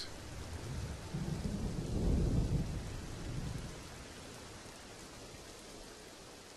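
Ambient storm sound: a steady hiss of rain with a low rumble of thunder that swells about a second in and dies away by about four seconds.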